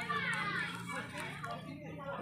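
Background voices of children and other people chattering and playing, fainter than a close talker, over a steady low hum.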